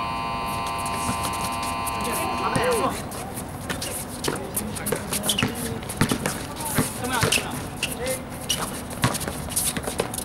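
An electronic game buzzer sounds steadily for about three seconds at the start, then cuts off. Afterwards come basketball bounces, short squeaks and players' shouts.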